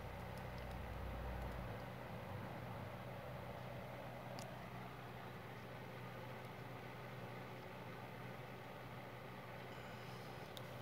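Quiet room tone with a steady low hum, a low rumble over the first second and a half, and one faint click about four and a half seconds in as a small plastic action figure is handled.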